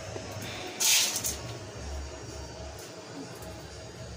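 Dry black beans being picked over by hand in a metal bowl, with a short rustling burst about a second in. Faint background music.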